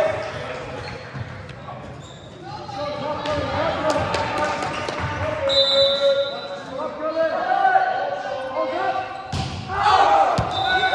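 Voices of players and spectators echoing in a large gymnasium during a volleyball match, with the thuds of a volleyball being bounced and struck, the strongest near the end. A short high tone sounds a little past halfway.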